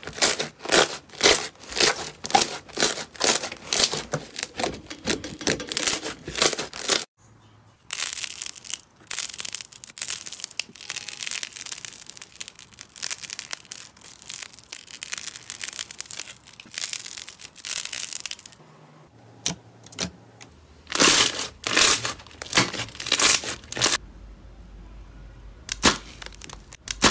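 Slime squeezed, pressed and stretched by hand, making repeated sticky crackling and popping sounds. The pops come in runs with short breaks between them.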